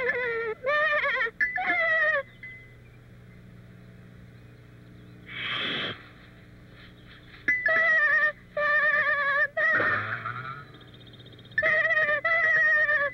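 Lamb bleating in a cartoon, several wavering baas in quick runs, first at the start and again from about the middle on. Between the runs there is a short hiss, timed to a snake rearing up beside the lamb.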